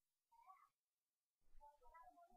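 Near silence: room tone, with a faint short sound about half a second in and faint scattered sounds from about a second and a half.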